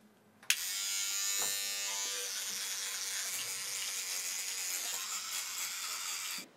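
Child's electric toothbrush buzzing steadily while brushing teeth, switched on about half a second in.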